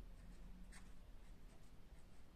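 Faint scratching of a felt-tip pen on paper: a few short strokes as symbols are written.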